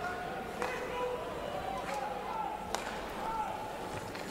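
Ice hockey rink sound during play: background voices from the stands, with a few sharp clacks of sticks and puck, the loudest a little under three seconds in.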